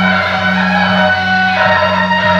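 Loud music accompanying a Taiwanese temple procession: a melody of held notes that shifts pitch a little past halfway, over a steady low drone.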